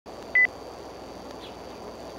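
A single short electronic beep, one steady high tone lasting a fraction of a second, about a third of a second in. Under it is the steady background hiss of an outdoor nest-cam microphone with a faint high whine.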